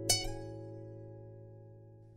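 A harp-like plucked-string chord struck once just after the start, left to ring and fading away slowly to near silence.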